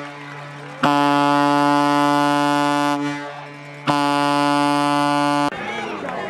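Air horn blown in long blasts: the tail of one at the start, then two more of about two seconds each, starting abruptly about a second in and again near the four-second mark. Each is a single steady, brassy low note.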